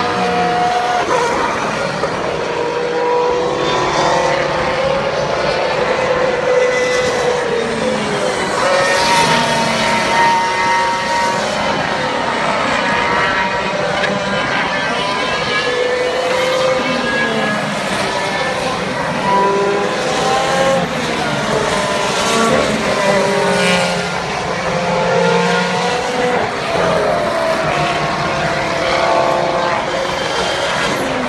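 Formula 1 cars running on the circuit, passing one after another, their engine notes rising and falling in pitch with each pass.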